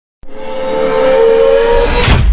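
An intro sound effect that starts suddenly and swells steadily in loudness, with a held tone and a rushing hiss; a deep bass comes in near the end as it builds into the intro music.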